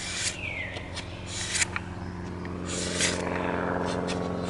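Opinel folding knife's blade drawn along 1200-grit sandpaper on a wooden sharpening jig, as finishing strokes to put an edge on it. Three short scraping strokes, about a second and a half apart.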